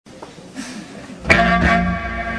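Band music starting: after a quiet, sparse opening, a loud chord with many notes is struck just over a second in and keeps ringing.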